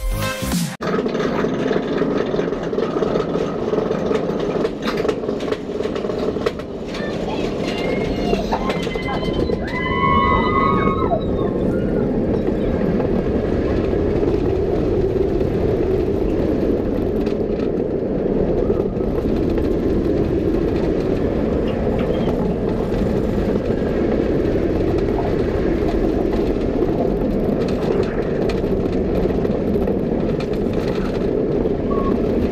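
On-ride roller coaster audio: the train running along the track with steady rushing wind noise. A rider's voice rises and falls briefly about ten seconds in.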